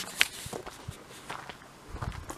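Footsteps of a person walking on loose ground strewn with wood chips: a series of soft, separate steps.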